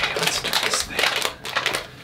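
Quick, irregular rustling and clicking from hands handling a hair-bleach kit and rubber gloves, dipping briefly just past the middle.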